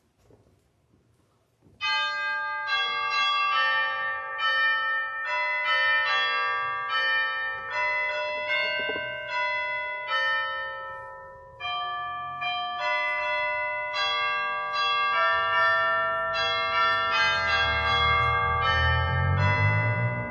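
Chimes ringing out a slow sequence of struck notes that overlap and sustain, beginning about two seconds in, with a short break a little past halfway. A low rumble sits under the last few seconds.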